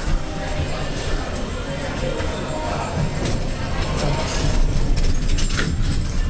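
Indistinct voices and background music over a steady low rumble.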